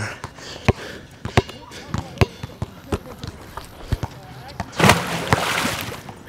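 Basketball dribbled on an outdoor hard court: sharp bounces about every 0.7 s, then lighter, quicker bounces. Near the end comes a loud burst of hissing noise lasting about a second.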